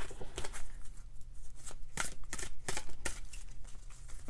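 A deck of oracle cards being shuffled by hand: an irregular run of quick clicks and slaps of card against card, several a second.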